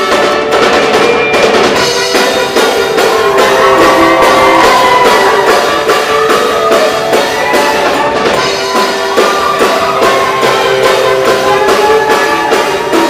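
Show choir performance: a choir singing held, sliding notes over a live band with drum kit and a steady beat.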